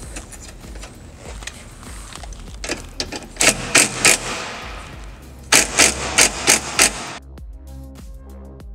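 Cordless impact driver with a hex bit driving the seat-bag mounting hardware, in two spells of short hammering bursts: about four pulses in the middle and five quick pulses later on. Electronic music takes over in the last second.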